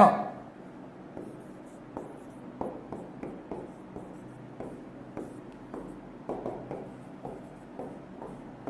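Felt-tip marker writing on a whiteboard: a run of short, irregular scratching strokes as symbols and brackets are drawn.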